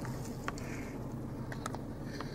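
Faint chewing of a bite of a Taco Bell Quesalupa, a few soft crackles from the fried shell over a low steady hum.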